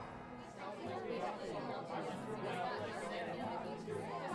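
Background chatter of several people talking at once, fairly faint, starting about half a second in.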